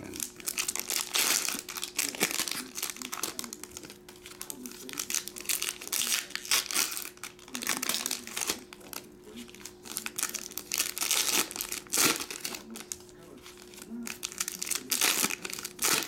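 Foil wrapper of a 2022/23 Donruss Optic basketball card pack crinkling and tearing as it is ripped open and handled by hand, in irregular bursts.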